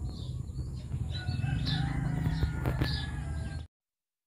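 A rooster crowing: one long call starting about a second in, over a low rumble. The sound cuts off suddenly near the end.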